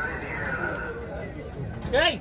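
People talking in the background, with a brief loud cry that falls in pitch near the end.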